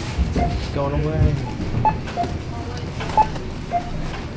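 Supermarket checkout barcode scanner beeping as the cashier scans items: about five short beeps at two alternating pitches, roughly a second apart, over background voices and store hum.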